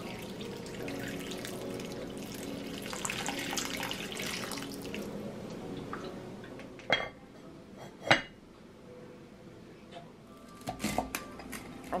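Water poured from a pitcher into a Dutch oven full of diced potatoes and vegetables, a steady splashing for about six and a half seconds. Then two sharp knocks about a second apart, the second the loudest, and a few softer clicks near the end.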